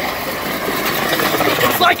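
Acura CL driving on a blown-out tire, its bare metal wheel rim scraping and rattling on the pavement as a dense, continuous grinding over the running engine.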